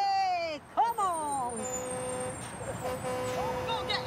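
Women shouting long 'whoa' cries that fall in pitch, then a vehicle horn sounding a steady note for about two seconds with a brief break.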